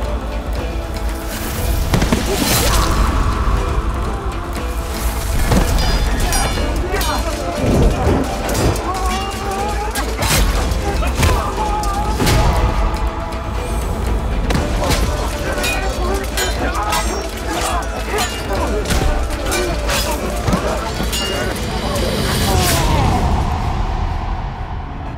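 Edited battle soundtrack: dramatic music score with booming hits under repeated sword clashes and impacts, and men shouting and grunting in the fight.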